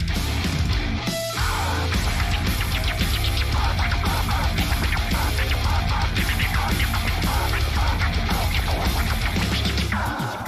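Heavy metal band playing a cover of a dangdut song: distorted guitar, bass and drums, with a short break in the bass just after a second in.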